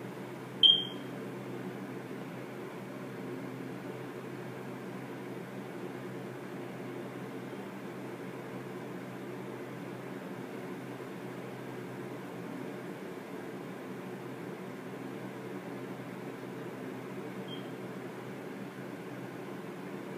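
A short, high electronic beep about a second in, with a much fainter beep of the same pitch near the end, over a steady low hum of room noise.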